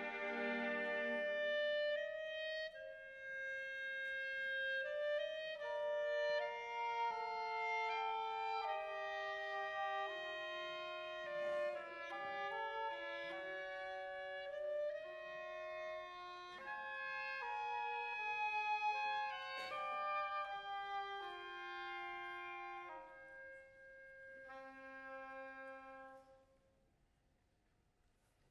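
A concert wind band plays a slow, sustained passage of a film score, with a woodwind melody over held notes. The music thins and fades out a second or so before the end.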